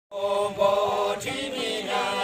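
A group of villagers singing a folk song together in unison, with long held notes that slide from one pitch to the next.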